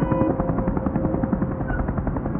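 Rapid, even chopping of a helicopter's rotor blades, over sustained ambient synth tones.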